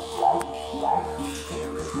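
PVC-pipe didgeridoo droning steadily, its sound pulsing in a rhythmic pattern with accents a little over half a second apart.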